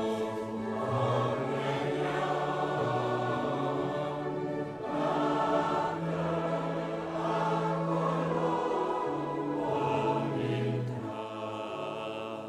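Congregation singing a hymn with grand piano accompaniment, in long held chords over a moving bass; the last chord dies away near the end.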